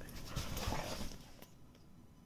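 Husky shifting and grooming itself on a fabric-covered couch: soft rustling and licking noises with a few low bumps, dying down about a second and a half in.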